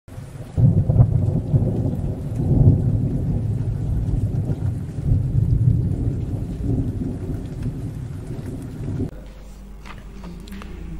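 Thunder rumbling with rain, used as a sound effect: it starts suddenly about half a second in, swells several times, and cuts off abruptly at about nine seconds.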